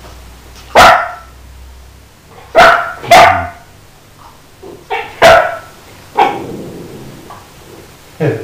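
Dog barking in short, sharp single barks, about six spread over six seconds, the first four the loudest. The dogs are over a lamb bone, and the owners call the barking dog territorial about it.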